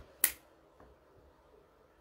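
A single sharp finger snap, about a quarter of a second in.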